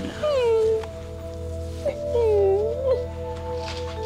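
A woman crying: two drawn-out wailing sobs, the first falling in pitch and the second dipping and rising again near the middle, over soft sustained background music.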